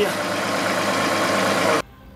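A John Deere 2038R compact tractor's diesel engine idling steadily, cutting off abruptly near the end.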